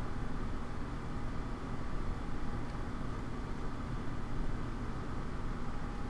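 Steady low hum and hiss of background noise picked up by the recording microphone, with no speech.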